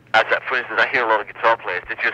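Speech only: a man talking in an interview, heard over a telephone line.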